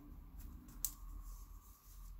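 Faint handling of a trading card in a clear plastic sleeve, with two light clicks.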